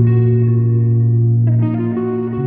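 Progressive rock music: a distorted, effects-laden guitar sound holds a loud low note, and a new chord comes in about one and a half seconds in.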